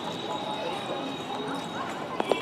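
A toddler's light footsteps in sneakers on paving stones, over faint background voices of people nearby.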